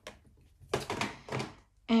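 A clear plastic storage box being moved off a wooden table, giving a few short knocks and clatters from about a second in.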